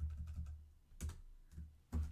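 Computer keyboard being typed on: a handful of separate quick keystrokes with short gaps between them, as a line of numbers is entered.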